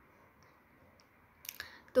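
Near-silent room hiss, then about a second and a half in a brief cluster of mouth clicks and a breath intake just before speech.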